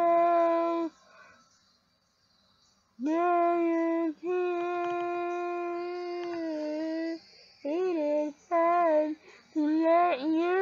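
Unaccompanied female voice singing: a note that ends about a second in, a pause of about two seconds, then a long steady held note of about four seconds, followed by short sung phrases.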